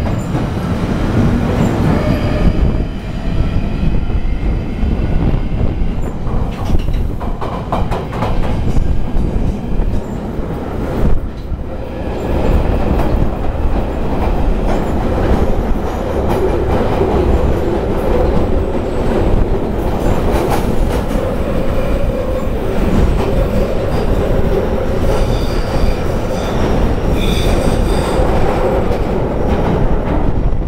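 London Underground train running at speed through a tunnel, heard from inside the carriage: a loud, continuous rumble and rattle of wheels on rail. A steady whine sets in about halfway, and high wheel squeal rings out near the end.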